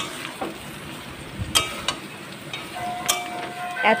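Metal spatula stirring chunks of ridge gourd and potato in a metal kadai, with a light frying sizzle and a few sharp clicks and scrapes of the spatula against the pan.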